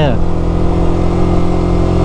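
Motorcycle engine running at a steady cruising speed, its pitch unchanging, with heavy low wind noise on the camera's microphone.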